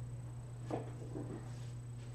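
Steady low background hum with a thin, high, constant whine. A brief soft sound about three-quarters of a second in, and a fainter one shortly after.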